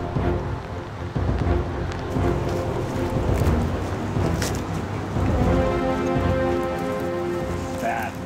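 Background music of long held notes over a steady rushing, rumbling noise like wind or rain on the microphone, with a brief crackle a little past halfway.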